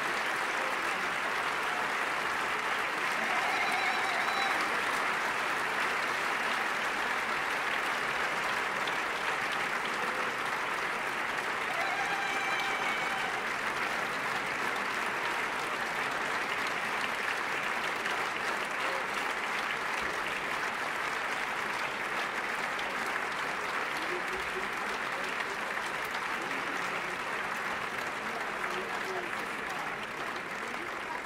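Large audience applauding steadily, with a few voices calling out now and then through the clapping.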